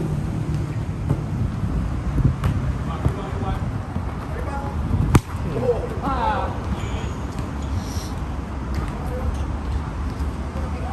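Outdoor five-a-side football play: a sharp thud of a football being kicked about five seconds in, followed by a brief shout from a player, over a steady low background rumble.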